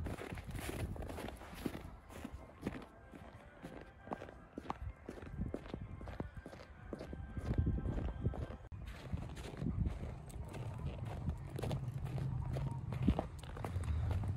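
Footsteps of a person walking through snow, one step after another at a steady walking pace, roughly two steps a second.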